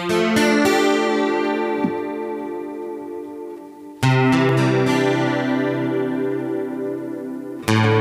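Acoustic guitar chords struck and left to ring out and fade, a new chord coming about every four seconds, as the song's instrumental intro.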